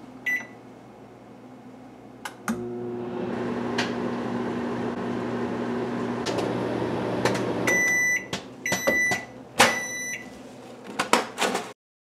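Microwave oven: a short beep as a button is pressed, a click as it starts, then the oven running with a steady hum for about five seconds. It stops with three beeps about a second apart, then a few clicks and knocks.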